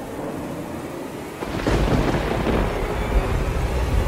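Storm sound effect: a steady rain-like hiss, joined about a second and a half in by a deep, rolling rumble of thunder that carries on.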